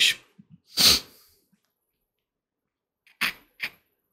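Short non-speech vocal sounds from a man at a close microphone: a sharp breathy burst about a second in, then two brief ones near the end.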